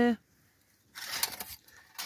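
Brief soft handling noise about a second in, a short scrape and rustle as a camping pot is taken by its wire handle off a stove.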